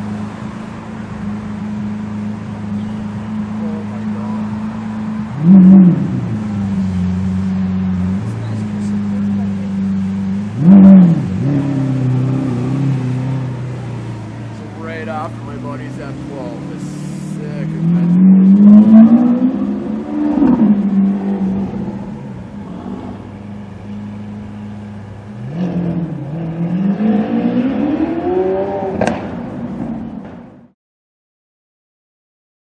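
Lamborghini Aventador's V12 idling with a steady low drone, blipped to a short sharp rev twice, about five and eleven seconds in. Later come two longer climbs in revs that rise and fall away, one past the middle and one near the end.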